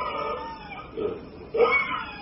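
A man's voice imitating the high-pitched stridor of laryngospasm in low-calcium tetany, where the vocal cords are clamped shut. A long squeal slides down and fades, then a second one rises sharply about a second and a half in.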